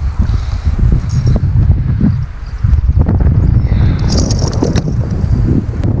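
Strong wind buffeting the action camera's microphone: a loud, low rumble that gusts up and down. About four seconds in, a brief splash of water as a small pike is swung out of the lake into the kayak.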